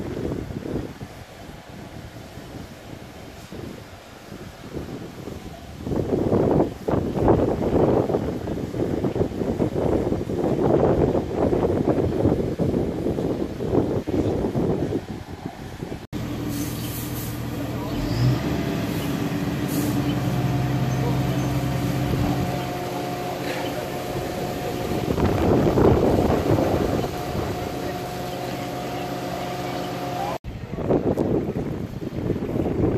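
For the first half, wind on the microphone and voices. About halfway through the sound cuts suddenly to a fire truck engine running steadily, a constant hum with a few held tones.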